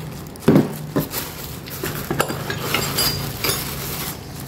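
Steel motorcycle transmission gears from a Honda Mega Pro clinking against each other, with plastic-bag rustling and crackling, as the gear set is handled inside a bag. There are scattered short clicks.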